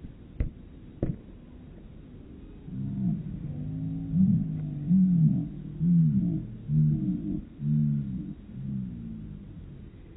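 Two sharp thumps of a soccer ball being kicked on sand, about half a second apart. Then a louder low pitched, wordless sound rises and falls in a string of short swells for about six seconds.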